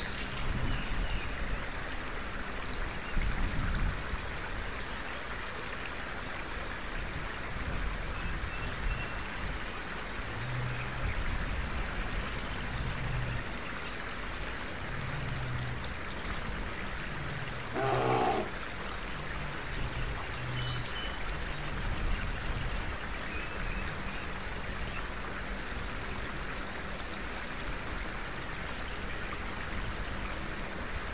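Fantasy forest ambience: a steady hiss with low bear-like growls and grunts coming and going, and one louder, rougher growl about eighteen seconds in. A few faint high chirps sound soon after.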